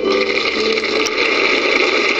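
Audience applauding after the song ends, a steady wash of clapping.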